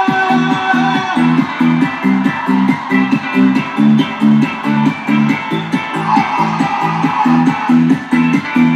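Live band music: a low plucked-string riff of short notes repeating at about three a second, steady and loud, with no vocals.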